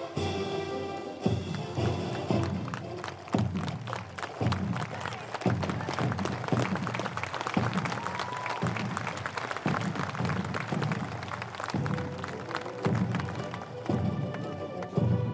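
A platoon of Marines marching in step on pavement: many sharp clicks and footfalls, with music under them that has a low beat about once a second.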